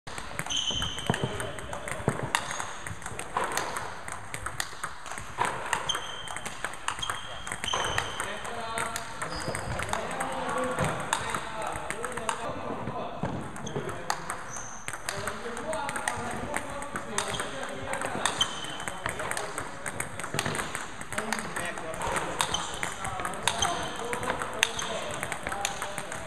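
Table tennis multiball drill: a quick series of balls fed onto the table, bouncing and struck by a bat with short-pimpled rubber, a sharp click every fraction of a second.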